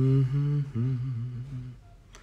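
A man humming a few low notes with his mouth closed. The first is held steady, and the next wavers before stopping shortly before the end.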